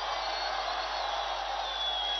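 Steady, fairly quiet noise of a large rally crowd, with a few faint high thin tones.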